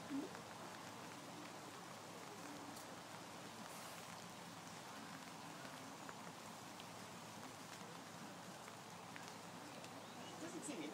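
Faint, steady outdoor hiss with no distinct events, and a brief laugh right at the start.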